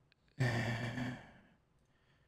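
A man's long sigh, breathy with some voice in it, starting about half a second in and fading out over about a second. It is preceded by a couple of faint small clicks.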